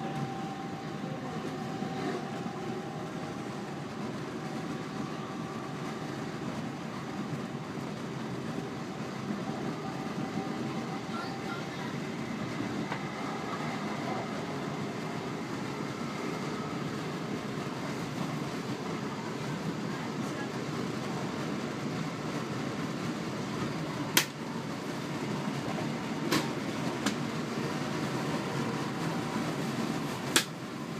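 Class 323 electric multiple unit running at speed, heard from inside the carriage: a steady rumble of wheels on rail, with a faint motor whine at the start that fades. A few sharp clicks sound near the end.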